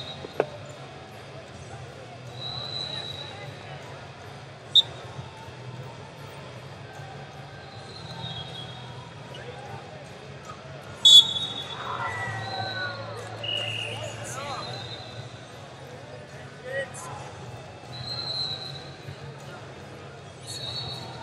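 Busy wrestling-tournament hall: a steady low hum and a haze of voices from around the mats, with several sharp slaps or thuds, the loudest about eleven seconds in. Short high whistle-like tones sound every few seconds.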